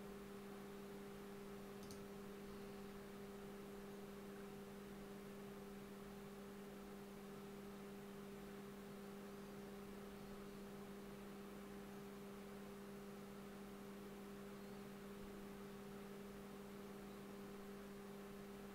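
Faint steady electrical hum, a low tone with a weaker higher one above it, over light hiss. There is a single faint click about two seconds in.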